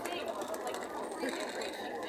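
Indistinct background chatter of voices with steady street ambience, with no clear voice in front.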